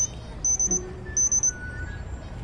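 Cricket chirping sound effect: high-pitched chirps of a few quick pulses each, twice, the comedy cue for an awkward silence.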